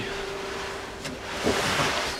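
A steady hiss of wind or handling noise on the microphone with a faint steady hum, and a single click about a second in.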